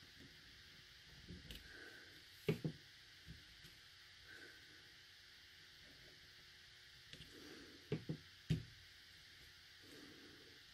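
Clear acrylic stamping block with a clear photopolymer stamp knocking lightly on the paper and table as it is positioned and pressed down. A pair of taps comes about two and a half seconds in and three more near the end, with faint handling noise between.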